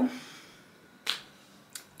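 A sharp snap or click about a second in, then a fainter click near the end, with quiet between.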